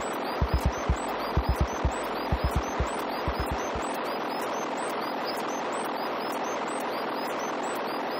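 Electronic music from a DIY modular synthesizer rig: a steady noisy wash with repeating high chirps, over a kick-drum pattern in quick groups of three or four that drops out about four seconds in.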